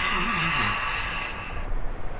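A long, forceful breathy 'haaa' blown out through a wide-open mouth, with a faint voice in it at first. It fades out about a second and a half in.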